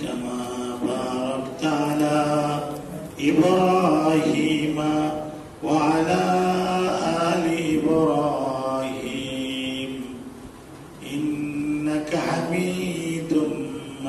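A man chanting a religious recitation into a microphone, in several long, held, melodic phrases with short breaks between them.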